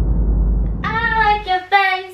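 Intro jingle: a deep bass backing that cuts off about one and a half seconds in, under a high-pitched voice singing two drawn-out, slightly falling notes near the end.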